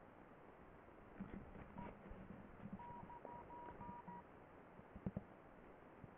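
Faint short electronic beeps: one about two seconds in, then a quick run of five or six more near the middle, like keypad or phone-dialing tones, over quiet room tone.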